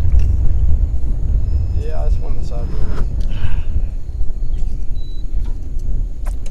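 Wind buffeting the microphone as a steady low rumble, with a faint voice briefly around the middle.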